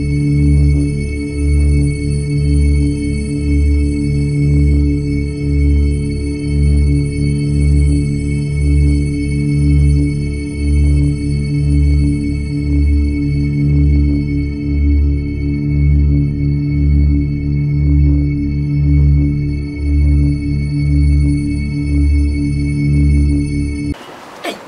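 Electronic intro music: held synthesizer tones over a bass note that pulses evenly a little more than once a second, then cuts off suddenly.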